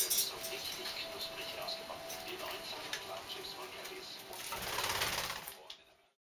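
Budgerigar picking and tugging at a paper tissue, with crinkling and small clicks. About four and a half seconds in comes a louder burst of rapid wingbeats as it flies off with the tissue, lasting about a second before the sound fades out.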